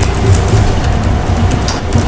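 Low steady hum in the meeting room, with a few faint clicks near the end.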